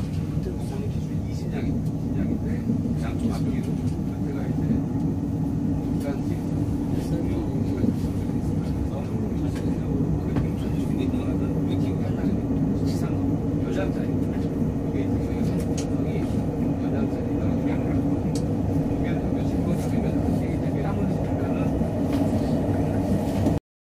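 Steady low rumble inside the passenger car of an SRT high-speed train (a KTX-Sancheon-type trainset) pulling out of a station, with a constant hum from its running gear and motors.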